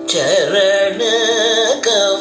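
Male Carnatic vocalist singing a devotional song, his voice sliding and oscillating through ornamented notes (gamakas) over a steady drone, with a brief breath break near the end.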